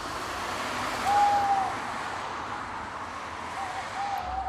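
Steady wash of distant city traffic noise, with a short clear high tone about a second in and another tone starting just before the end.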